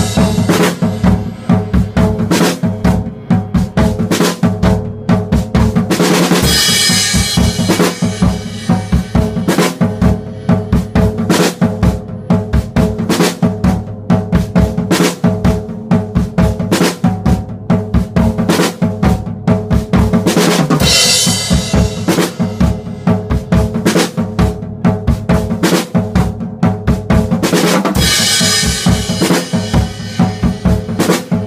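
Acoustic drum kit played hard and fast in a rock groove: bass drum, snare and toms in dense, busy patterns and fills. Crash cymbals wash out near the start, about six seconds in, around twenty seconds in and near the end.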